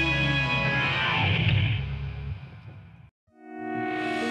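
Classic-rock band's last chord, led by distorted electric guitar, ringing out with a note sliding down in pitch, then dying away to silence about three seconds in. Just after, different music fades in with held notes.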